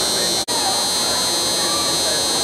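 A steady high-pitched buzz with faint, indistinct spectator voices beneath it. The sound cuts out for an instant about a quarter of the way in.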